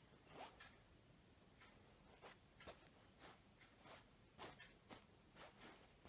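Faint rustling of saree cloth as hands fold and smooth it: a run of short brushing strokes, roughly two a second.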